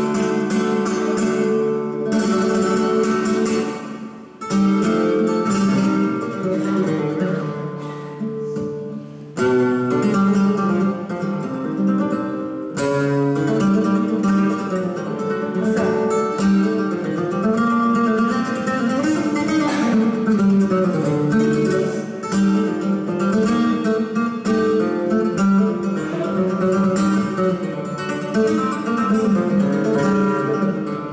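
Flamenco guitar playing solo, mixing strummed chords with plucked melodic runs in the pause between the singer's verses.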